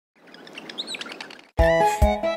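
Birds chirping over a soft outdoor hiss, a short farmyard ambience; about one and a half seconds in, bright children's song music starts abruptly and loudly.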